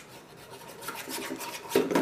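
Spoons scraping and clicking against bowls as slime ingredients are stirred, a quick run of rasping strokes that grows louder in the second half.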